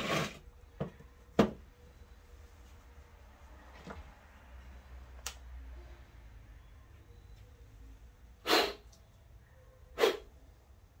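Scattered clicks and knocks of a Smart car clutch actuator being handled and taken apart on a workbench, with a louder, brief knock about eight and a half seconds in.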